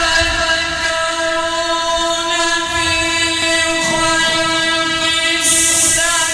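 A Quran reciter's voice holding one long, steady note in chant, rich in overtones, with a short hiss near the end.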